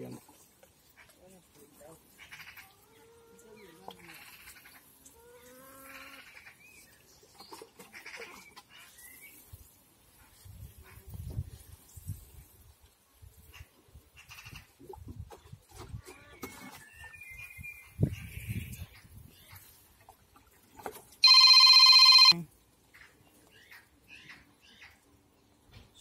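Faint patter of water from a watering can's rose onto soil and plants, with faint calls in the background. About 21 seconds in, a loud electronic tone sounds for about a second and cuts off.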